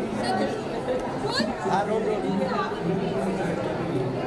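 Indistinct chatter of several voices talking at once, a crowd of people conversing.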